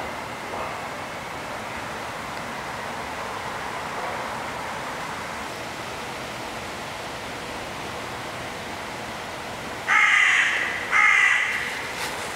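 Two loud bird calls, about a second apart, near the end, over a steady outdoor background noise.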